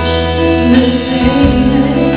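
Live band playing a slow ballad with guitar prominent and a woman singing along.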